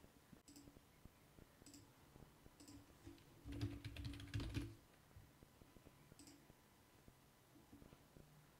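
Faint computer keyboard typing: scattered keystrokes and clicks, with a louder run of keystrokes about halfway through, as login details are typed in.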